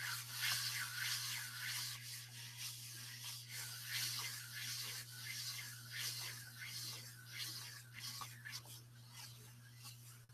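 Flat palms rubbing back and forth over a sheet of paper laid on a gelli plate, pressing off a watercolor print. A faint, repeated swishing of skin on paper, several strokes a second, over a steady low hum.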